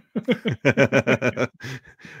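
A man laughing in a quick run of short, evenly spaced "ha" pulses, followed near the end by a softer, breathier burst of laughter.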